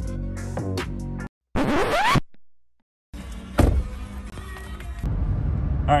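Background guitar music that cuts off about a second in. A quick rising scratch-like sound effect follows and fades out, then a brief silence. After that comes the steady low road noise of a car cabin at highway speed, growing louder a second before the end.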